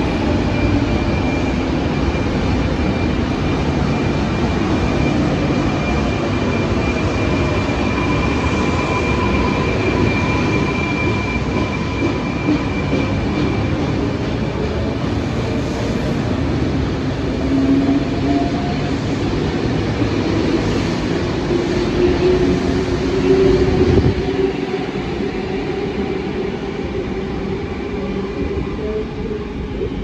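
Electric passenger train running: a loud, steady rumble with a high whine over it, and lower tones that slowly rise and fall in pitch as the train's speed changes.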